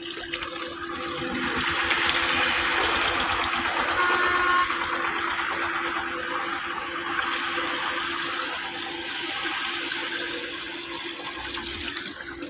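Water gushing from a pipe into a shallow concrete tank, a steady rushing splash, with a steady low hum underneath.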